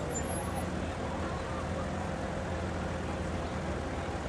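Porsche 911 GT3's flat-six engine running at low revs as the car rolls slowly by: a steady, even low rumble.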